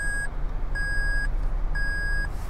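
Toyota Tundra cabin warning chime beeping about once a second, each beep about half a second long, set off by pressing the transfer-case lock switch. A low steady hum runs beneath.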